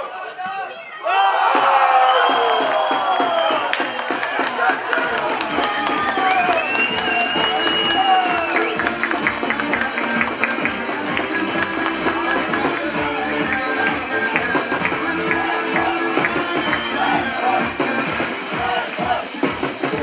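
Shouting and cheering break out suddenly about a second in, as a football goal is celebrated. From about five seconds in, music with a steady beat plays under the voices.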